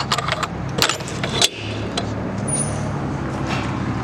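Metal bar latch of a horse trailer's side door clicking and rattling as it is unlatched and the door swung open, a quick run of sharp clicks in the first second and a half. A steady low hum runs underneath.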